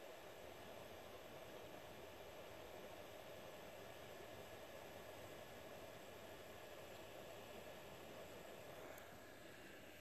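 Faint, steady hiss of a hot air rework gun's airflow on a low fan setting, reflowing solder paste on a circuit board; it drops slightly near the end.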